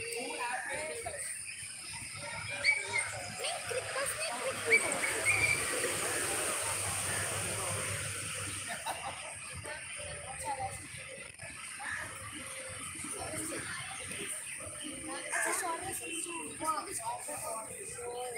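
Indistinct voices of people around a cricket ground talking and calling out, with a few short high calls in the first seconds. A rushing noise rises for a few seconds in the middle.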